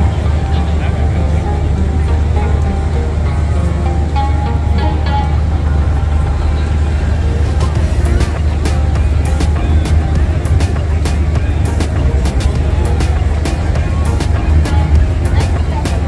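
Background pop music with heavy bass. A steady beat of sharp, hi-hat-like ticks comes in about halfway through.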